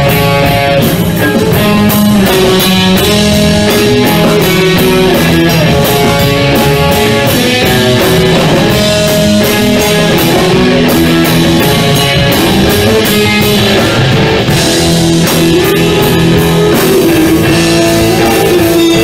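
Live rock band playing an instrumental passage: electric guitar and bass over a steady drum-kit beat.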